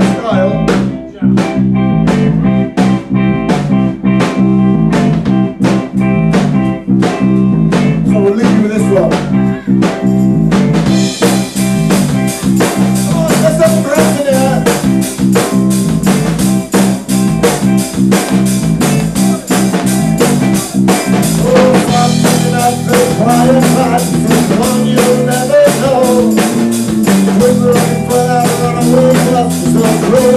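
Live rock band with drums, bass guitar and electric guitars. For about the first ten seconds a sparser intro with a steady drum beat and bass plays, then the full band comes in with cymbals and guitars, and lead vocals follow a few seconds later.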